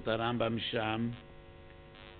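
Steady electrical mains hum with a man's lecturing voice over it for about the first second. The voice then stops and the hum goes on alone.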